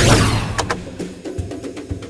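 A whoosh sound effect, falling in pitch over about half a second on a fast whip-pan, followed by background music with a few sharp percussive knocks.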